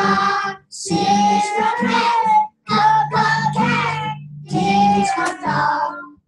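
A group of young children singing a song together, in short phrases with brief breaks between them.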